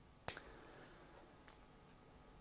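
Near silence with faint hiss, broken by a sharp click a quarter second in and a much fainter click about a second and a half in.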